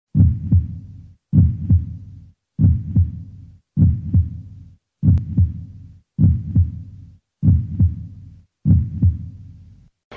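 A heartbeat sound effect: eight slow, deep double thumps, one pair about every 1.2 seconds, each fading away before the next.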